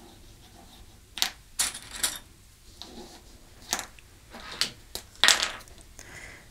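Small plastic sewing clips clicking and clattering as they are picked from a dish of clips and snapped onto fabric, with light fabric handling: about six short, sharp clicks spread over several seconds.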